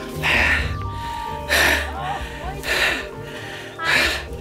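A person breathing hard in about four heavy gasps, with short strained vocal grunts, from the effort of hauling free of deep, sucking mud.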